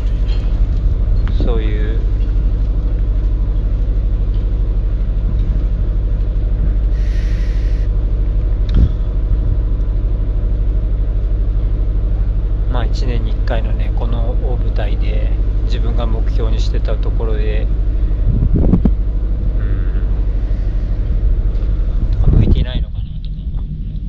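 A steady low mechanical drone, like an engine running, under voices speaking now and then, most around the middle of the stretch.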